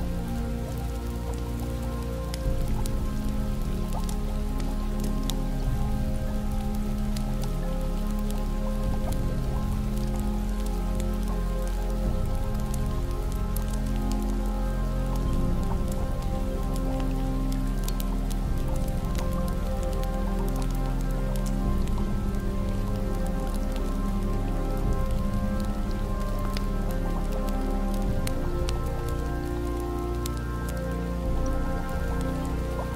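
Soft ambient music of slow, sustained chords that change every few seconds, layered over steady rain and scattered sharp crackles of a wood fire.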